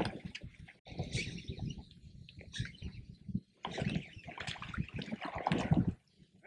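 Water lapping and splashing against a boat's hull in irregular bursts, with brief gaps.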